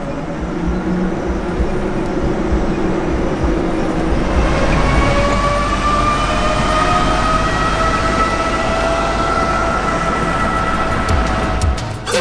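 Mercedes-Benz Vision AVTR electric concept car moving under power: a steady electric hum, then from about four seconds in several whining tones that rise slowly in pitch, cutting off at the end.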